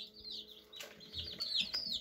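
Chicks peeping: a run of short, high peeps that each slide downward, coming more thickly near the end.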